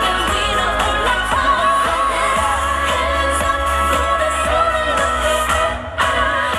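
K-pop dance song with female vocals, played loud through the concert sound system. The music dips briefly just before the end.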